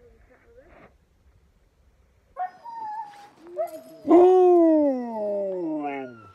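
Sled dogs (huskies) whining. The calls start a little over two seconds in, and the loudest is a long, drawn-out whine about four seconds in that slides steadily down in pitch.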